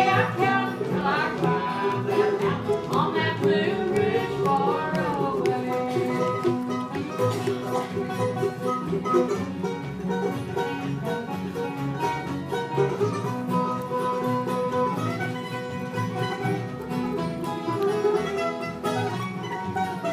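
Live bluegrass band playing an instrumental break between verses: acoustic guitars, mandolin and upright bass.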